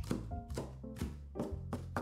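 A chef's knife chopping a pile of fresh dill and parsley on a wooden cutting board, quick strokes at about three a second, over background music.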